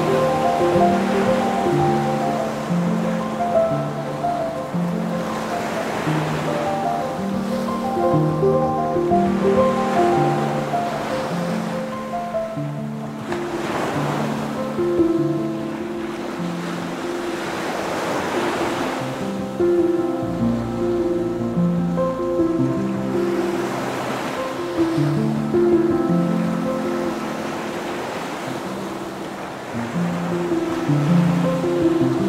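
Soft instrumental music of held notes over the sound of ocean surf, the waves swelling up and washing out every few seconds.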